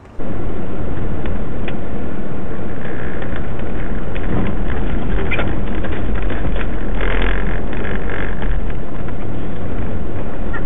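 Front-wheel-drive car driven on snow, heard from inside the cabin: loud, steady engine and tyre noise with a deep rumble, heaviest about seven seconds in, with scattered clicks and knocks.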